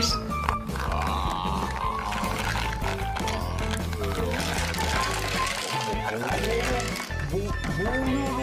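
Background music with steady sustained notes over a repeating bass.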